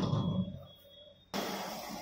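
A sharp knock right at the start, then quiet; about a second and a half in, a steady rushing noise cuts in abruptly: restaurant-kitchen noise from a wok on a gas burner.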